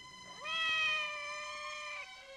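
A cat's single long meow, rising at the start and then held steady for over a second.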